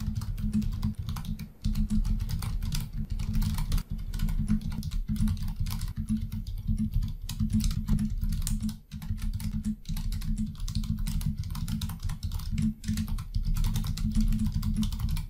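Typing on a computer keyboard: a fast, continuous run of keystrokes with a brief lull about nine seconds in.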